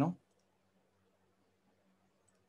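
Near silence after a last spoken word, with a couple of faint computer mouse clicks shortly after it.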